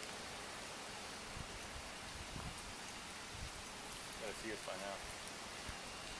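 Steady low outdoor hiss on a body-worn camera microphone, with a few faint low knocks in the first half and a distant voice speaking briefly about four seconds in.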